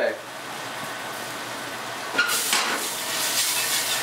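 Lemon and white-wine sauce sizzling quietly in a stainless-steel skillet; about two seconds in, a wire whisk starts stirring through the sauce, louder and uneven.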